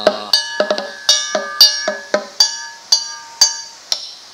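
Small gong and drum of a Cantonese lung-chau (dragon-boat song) accompaniment struck in a quick, even beat of about four strokes a second, each stroke ringing briefly, in the instrumental break between sung lines.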